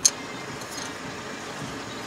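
A motor vehicle's engine running steadily nearby, an even mechanical din, opening with a sharp click.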